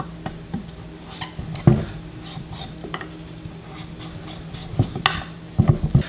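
Chef knife cutting and scraping on a wooden cutting board as it trims leftover skin off a peeled butternut squash: scattered knocks and short scrapes, the loudest about a second and a half in and several more near the end.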